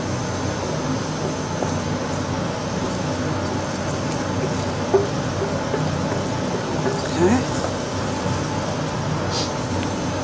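Steady rushing kitchen background noise over a lit gas stove, with a few faint scrapes and knocks as mushrooms are tipped from a copper sauté pan into the risotto pot.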